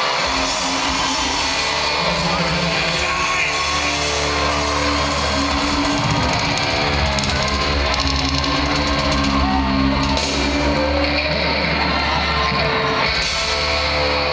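A rock band playing live through an arena sound system, led by electric guitars.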